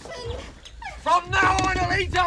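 A person's voice crying out in a long, held call that starts about a second in, steady in pitch and dropping at its end, over a low rumble.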